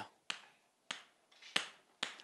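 Chalk striking a chalkboard while a word is written: three short, sharp clicks spread over the two seconds.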